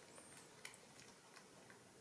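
Near silence: faint room tone with a few soft clicks from young macaques picking at fruit on a plate.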